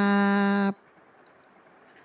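A voice holding a long, steady chanted 'kraap' ('bow'), the spoken cue for a prostration to a monk in a Thai Buddhist ceremony. It ends under a second in, leaving faint room tone.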